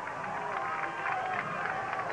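A stadium band playing held chords over crowd noise, steady throughout, with no clear beat.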